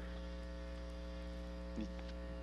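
Steady electrical mains hum: a low drone with several fixed, unchanging higher tones over it.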